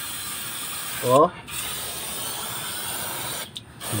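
Aerosol brake cleaner spraying in a steady hiss onto a rear brake hub and backing plate, washing off brake dust; the spray pauses briefly about a second in and stops near the end.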